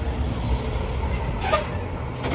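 Steady low rumble of a running vehicle engine or passing traffic, with a short sharp hiss about one and a half seconds in.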